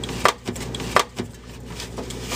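A few short, hard knocks and taps as soda cans and cardboard boxes are handled, over a steady low hum.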